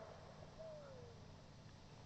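Near silence: faint hiss from the boombox's radio during a lull in the broadcast, with one faint, short falling tone about half a second in.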